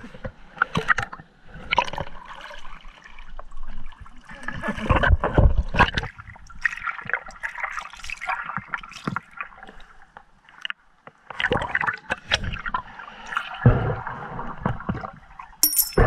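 Muffled underwater sloshing and bubbling as a hand fans sand on a riverbed, heard through a submerged camera, with irregular surges and two stronger low swells.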